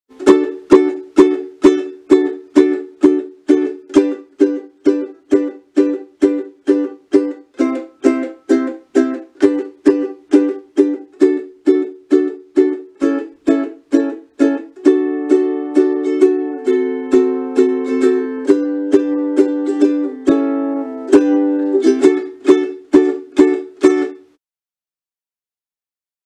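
Fender cutaway ukulele playing a staccato strum: each chord is strummed and then cut short by the right hand muting the strings, about two strokes a second. For a few seconds in the middle the chords ring on as normal strumming, then the short muted strokes return and the playing stops shortly before the end.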